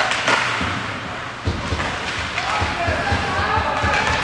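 Ice hockey play in a rink: two sharp cracks of a stick or puck against the boards or glass at the start, then a run of dull low thumps, with voices calling out over them.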